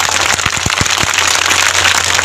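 Crowd clapping: a dense, steady patter of many hands applauding a rallying line.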